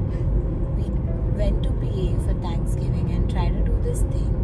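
Steady low rumble of road and engine noise inside a moving car's cabin, with faint voices over it.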